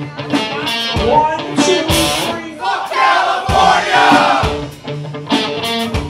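Live rock band playing loud through a bar PA: electric guitar and drum hits, with a vocal over them near the middle.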